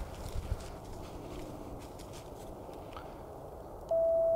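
Faint footsteps through dry leaf litter and twigs on a forest floor. Right at the end a steady single-pitched tone starts abruptly: the Icom IC-705 transceiver's CW sidetone as it keys up to transmit for an SWR check.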